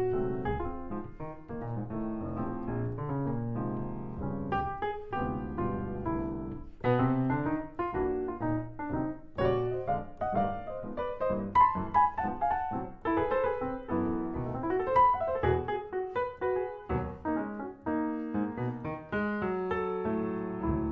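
Solo jazz piano played live on a grand piano: a running line over chords, getting busier and more sharply accented about seven seconds in.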